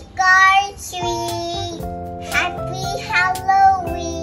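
A young child's voice singing short phrases over background music with steady held chords.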